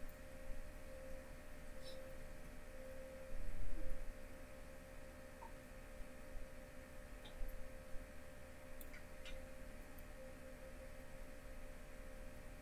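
Faint steady hum at one pitch, with a few soft clicks scattered through it and a low thump about three and a half seconds in.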